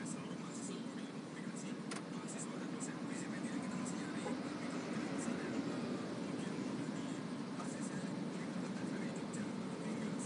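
Steady low rumble inside a car's cabin as it idles and creeps forward in slow traffic, with faint indistinct voices in the background.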